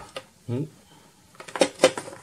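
A few sharp clicks and knocks, the loudest near the end, as a USB cable is plugged into a power bank and the power bank is set down on a hard table top.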